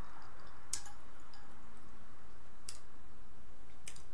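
Three short, sharp clicks, about a second in, near the three-second mark and just before the end, from drinking out of a clear plastic cup and setting it down. They sit over a steady faint hiss and low hum.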